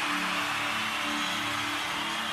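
Soft live-band music: quiet held chords that shift slowly from one to the next, over a steady hiss.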